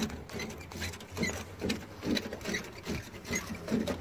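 Wire brush scrubbed back and forth over paint protection film on a car's painted body panel: rhythmic scratching, a little over two strokes a second.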